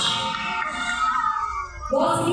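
Background music playing, with a brief splash of water at the very start as a sea lion dives into the pool. The music dips in level near the end.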